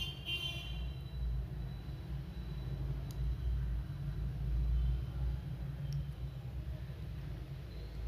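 A low, steady rumble of background noise that swells and fades, with a faint high tone in the first second.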